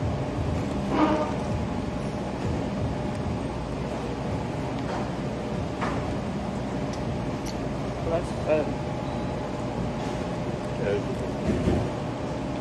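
Café room sound: indistinct background voices over a steady hum. A few short crackles of a paper sandwich wrapper and napkin are handled.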